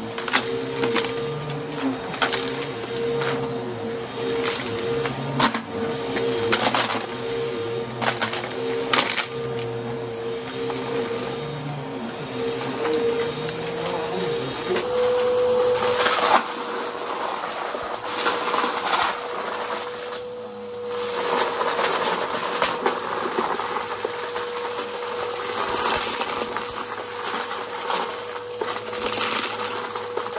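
Upright vacuum cleaner running with a steady whine, with sharp crackling and crunching as grit and debris are pulled through it. The whine steps slightly higher about halfway through, and the crackles come thicker after that.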